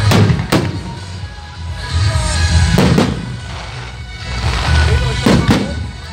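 Fireworks shells bursting in pairs of sharp bangs, three times, about two and a half seconds apart, over music.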